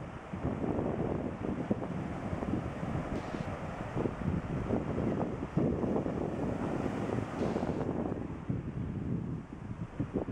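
Surf breaking and washing onto a beach, with wind buffeting the camera microphone in a continuous low rumble.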